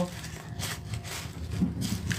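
Red tissue paper rustling and crinkling as it is handled and bunched in the hands, in a few short bursts.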